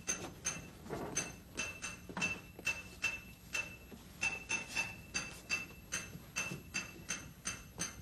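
Metal tools banging on a metal pipe during a leaky-pipe repair: a steady run of clanks, about three or four a second, each with a ringing note.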